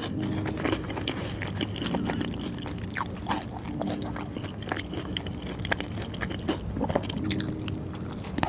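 Close-miked chewing and biting of a burger in a soft bun, with many irregular wet mouth clicks and smacks.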